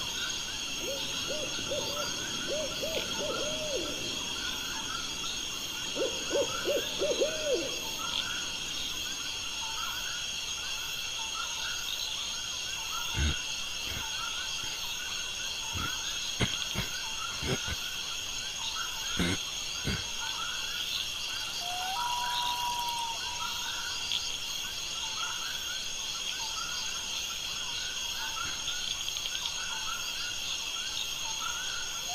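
Night-time outdoor ambience: hooting calls in quick runs of several notes near the start and again about six seconds in, over a steady high chirring of insects. A few sharp clicks come in the middle, and a brief whistle-like tone follows.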